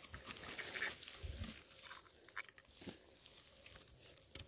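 Faint rustling and crackling of dry moss and twigs as a gloved hand pushes into the forest floor to reach a mushroom, with scattered small snaps and a soft thud about a second in.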